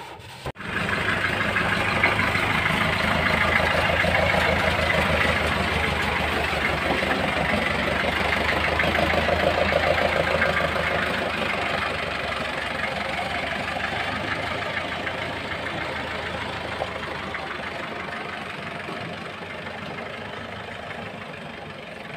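Truck-mounted mobile rice mill's engine and huller running steadily while milling palay: a loud, even machine drone. It starts suddenly about half a second in and grows slowly quieter over the second half.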